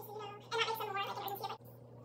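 A high, wavering voice-like sound in short repeated notes, breaking off about one and a half seconds in.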